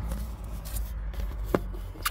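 Hands working a rubber drain valve off the end of a sunroof drain tube: low rustling and handling noise with one sharp click about one and a half seconds in.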